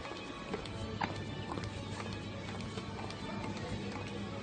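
Footsteps of shoes clicking on a hard shop floor, roughly two steps a second, over background music and a low steady hum.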